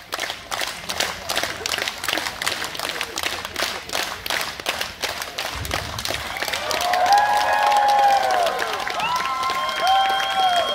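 Audience clapping steadily, then breaking into loud cheers and whoops from about seven seconds in, just after a fire breather blows a fireball; a brief low whoosh comes shortly before the cheering.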